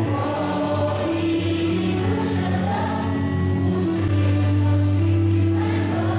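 Mixed choir of young men and women singing together, holding long notes.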